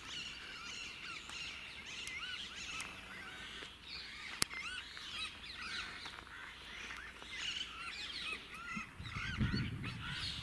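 Many birds chirping and calling at once, short arched calls overlapping throughout. There is one sharp click about four and a half seconds in, and a low rumble comes in near the end.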